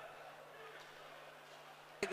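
Near silence: a faint, steady low hum with a light background hiss.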